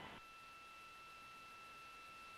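Near silence: faint hiss on the broadcast line with a faint, steady high tone held throughout.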